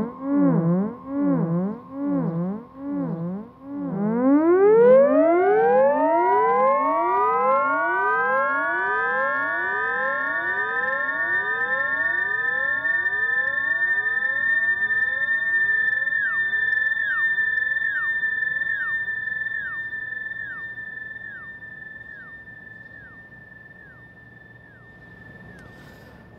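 Theremin played through a delay set to heavy feedback, so its sound loops back on itself. A warbling tone gives way, about four seconds in, to an upward glide that repeats again and again in overlapping echoes, building into a sustained high tone that slowly fades near the end.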